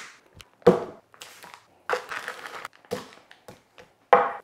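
A plastic vacuum-seal bag of raw pork ribs being crinkled and torn open, in a series of separate rustles with a few sharp knocks as the wet meat is handled onto a wooden cutting board.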